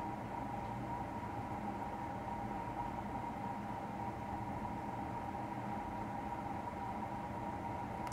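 Steady room tone: a constant hiss with a low hum and a faint, unwavering high whine, with no change throughout.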